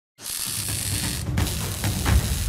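Animated logo intro sting: a loud, hissing whoosh over deep pulsing bass hits. It starts suddenly just after the opening, with a brief break in the hiss a little past one second and a few sharp clicks after it.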